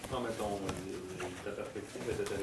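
Low-level, indistinct human speech in a small room, too unclear to make out words.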